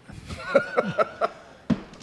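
A man laughing into a studio microphone, a run of short chuckles at about four a second, followed by a single sharp click near the end.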